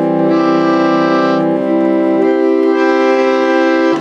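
Suitcase pump organ (reed organ) sounding sustained chords, with the left knee lever bringing in another series of reeds to make it louder. The chord changes about a second and a half in and again past two seconds, and the tone grows brighter shortly after the start and again near the end.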